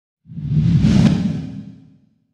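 Logo-reveal whoosh sound effect: a low rushing swell that starts about a quarter second in, peaks with a sharp hit around a second, and fades away by the end.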